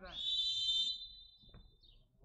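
Referee's whistle: one long blast, loudest for about the first second, then trailing off.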